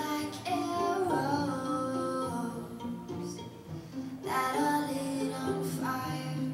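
A woman sings with acoustic guitar, violin and cello in a live acoustic arrangement. There are two sung phrases with held notes, the second starting about four seconds in.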